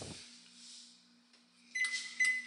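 A short electronic beep near the end, a single steady high tone. A low thump of camera handling at the start and a faint steady hum underneath.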